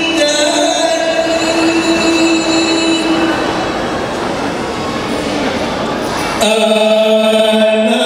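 Rebana frame drums beaten in a dense, rapid roll under a held sung note that fades out about three seconds in. About six and a half seconds in, the drumming stops suddenly and voices come in on a loud held chord.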